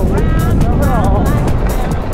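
Electronic dance music with a steady, driving beat and a vocal line over it.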